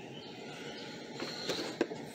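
Quiet outdoor ambience: a steady faint hiss with a thin, high chirp about halfway through, and two light clicks near the end.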